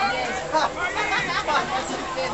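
Several people chattering at once, their voices overlapping.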